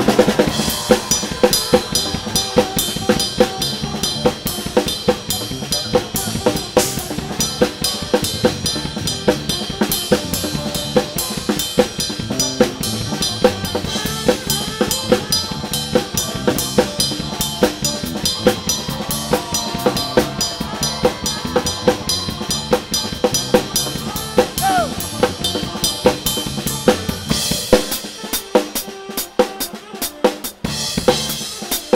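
A drum kit heard close up, playing a steady, busy groove of kick, snare and cymbals over a live band's soul number. Near the end the deep bass drops away while the drums keep going.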